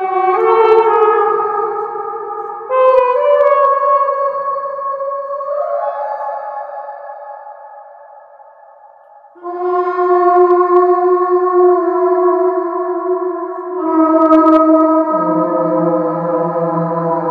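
Plastic trumpet played through a Yamaha Silent Brass mute mic into an M-Vave Mini Universe reverb pedal and amp: long held notes smeared into a spacey, sci-fi wash of reverb. A new note enters every few seconds, one sliding up to a higher pitch, and the sound fades nearly away in the middle before the next note swells in.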